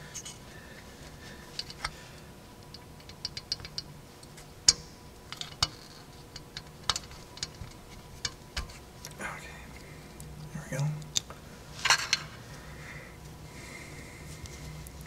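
Sharp, scattered metallic clicks and clinks as small steel fuel-line fittings are handled and worked loose on a John Deere 2940 diesel engine, with a short flurry of rattling near the end.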